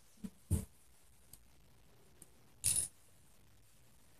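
Quiet handling sounds from satin-ribbon embroidery on vagonite fabric: a short sharp tap about half a second in and a longer rasping scrape just under three seconds in.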